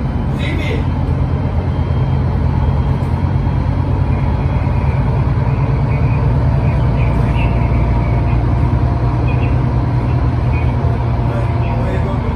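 Otokar Kent C18 articulated city bus under way, heard from inside the passenger cabin: a steady low engine and drivetrain drone with road noise.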